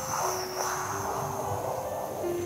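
A long hissing inhale drawn in through a rolled tongue in sheetali pranayama, the yogic cooling breath. It fades out near the end, over soft background music with held notes.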